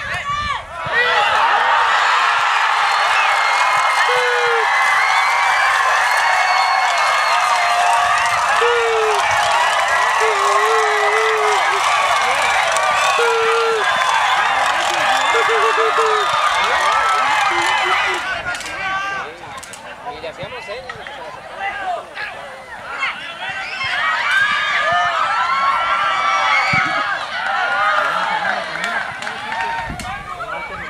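Crowd of football spectators shouting and cheering a goal: a loud mass of many voices that rises suddenly about a second in, holds for some seventeen seconds, then falls away to scattered shouts and chatter.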